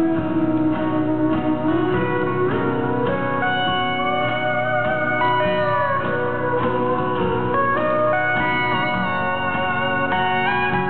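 Pedal steel guitar playing an instrumental solo, its notes sliding up and down in pitch, over a strummed guitar accompaniment in a live band performance.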